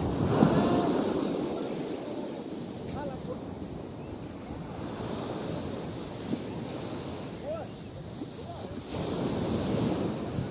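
Ocean surf breaking and washing in, swelling about a second in and again near the end, with wind buffeting the microphone.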